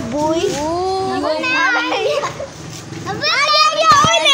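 Children's voices talking and calling out, with drawn-out gliding calls, then a loud high-pitched call starting about three seconds in.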